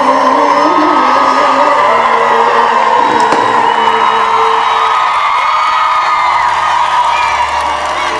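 A live band playing on stage with a large crowd cheering and whooping over the music.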